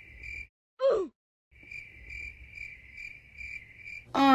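Crickets chirping: a steady high trill, heard briefly at the start and again from about a second and a half in. About a second in, a short sound slides down in pitch.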